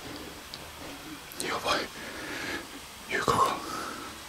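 Hushed, whispered voice: two short whispered utterances, one about a second and a half in and one near the end.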